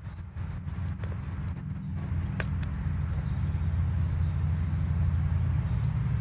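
Low rumble on the microphone that grows slightly louder, with a few faint clicks and taps as fishing gear is handled.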